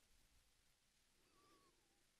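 Near silence: a pause in the conversation with only faint background hiss.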